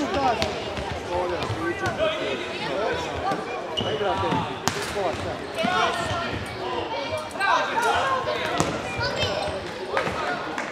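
Several voices shouting across an indoor futsal game, with the ball being kicked and bouncing on a wooden sports-hall floor in sharp knocks throughout.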